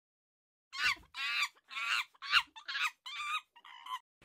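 A quick series of about seven short, high-pitched animal calls, starting about a second in.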